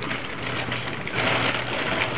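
Soft rustling and scraping of a scoop dipping into bleach powder, thickest a little past the middle, over a steady low hum.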